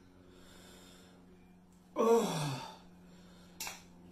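A woman's breathy, wordless "mmm" of enjoyment while eating, falling in pitch, about halfway in; a brief sharp click follows near the end, over a faint steady hum.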